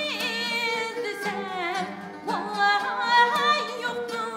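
Woman singing a Uyghur song in a high, heavily ornamented line with wide wavering vibrato, in long phrases with a fresh phrase entering about halfway through. Accompanied by held notes from the ghijak (bowed spike fiddle) and the long-necked tambur and dutar lutes.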